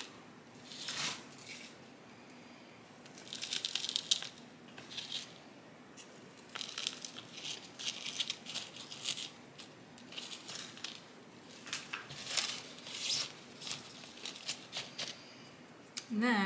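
Potting mix being scooped, poured into a plastic nursery pot and pressed down by hand: irregular bursts of dry rustling and crackling soil, several clusters with quieter gaps between.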